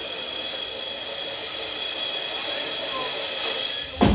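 A hissing noise swell with steady high ringing tones from a metal band's stage sound, building gradually louder as the lead-in to a song, until drums and the full band crash in at the very end.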